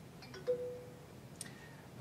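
Fluke Networks OptiFiber Pro OTDR tester sounding a short two-note electronic chime about half a second in, as its auto-test completes with a pass. A faint click follows a second later.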